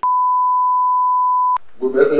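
Steady single-pitch test-tone beep of the kind played over colour bars, held for about a second and a half and cut off by a sharp click.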